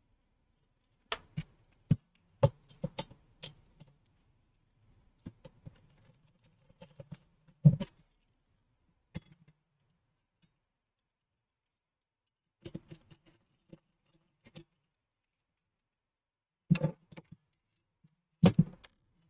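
Scattered sharp clicks and knocks of a metal hard-drive tray and its mounting screws being handled and fastened, in irregular clusters with silent pauses between; the loudest knocks come about a third of the way in and near the end.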